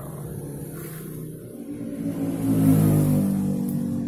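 A motor vehicle engine running with changing pitch, growing louder to a peak about two and a half seconds in and then easing off.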